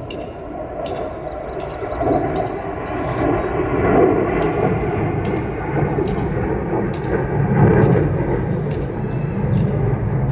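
Sukhoi Su-30MKI fighter's twin turbofan jet engines: a deep, rumbling jet roar that grows steadily louder over the first few seconds as the aircraft flies its display, then holds loud.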